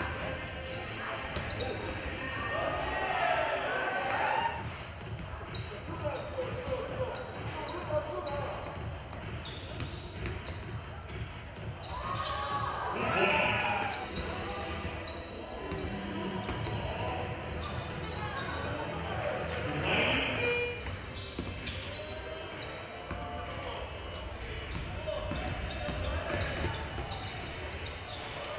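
A basketball being dribbled and bounced on a hardwood court in a large indoor gym. Raised voices call out over it in several loud bursts.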